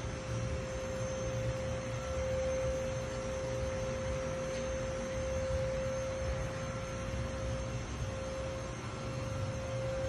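The electric-hydraulic power tilt pumps of twin 450 hp Mercury outboards running continuously as the motors tilt up to their raised position, giving a steady whine over a low hum.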